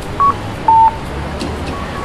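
Japanese audible pedestrian crossing signal sounding its two-note electronic chime over traffic noise: a short higher beep followed by a longer lower one, the tone that tells blind pedestrians the light is green. A fainter pair answers near the end.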